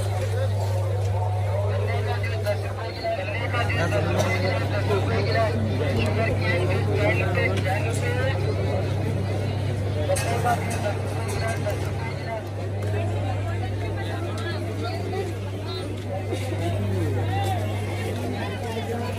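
Dense crowd babble of a busy night street market: many overlapping voices, none standing out, over a steady low hum.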